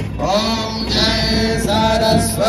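Sung Hindu devotional chant: a voice holding long, gently bending notes over a steady low backing.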